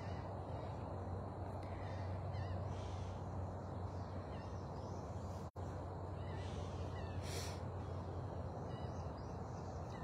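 Steady outdoor background noise with a low hum, broken by a few faint brief sounds, the clearest about seven seconds in.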